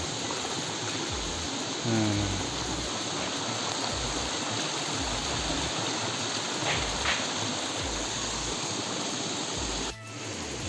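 Mountain stream water rushing steadily over rocks, with a short voice sound about two seconds in.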